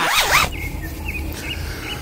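A brief sweeping swish as the music ends, then a steady low room hum with a few faint, short, high bird chirps.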